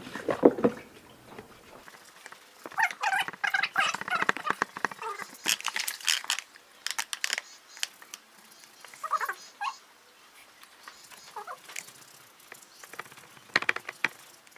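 Water splashing in a plastic basin as a wet foot is rinsed by hand, then short scraping strokes of a pumice stone scrubbing the sole and toes of a soapy foot. Short pitched animal calls break in about three seconds in, the loudest sound in the stretch, and again more faintly near nine and eleven seconds.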